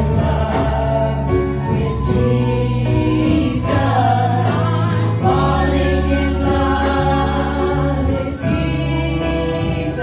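Live worship band playing a gospel song: several voices singing together over keyboard and electric guitars, with a steady beat.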